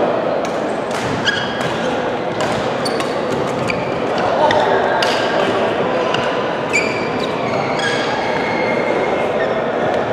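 Badminton rally in a large echoing hall: repeated sharp racket hits on the shuttlecock and brief high squeaks of court shoes, over a steady background of voices.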